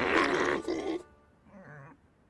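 A cartoon pig character grunting with strain, two short grunts in the first second, then quiet.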